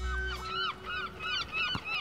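A group of birds calling, a quick run of short calls that rise and fall in pitch, about four a second. The low bass of background music fades out under them in the first half.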